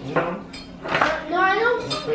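A metal fork clinking and scraping against a ceramic plate a few times, with a young child's high-pitched voice in the second half.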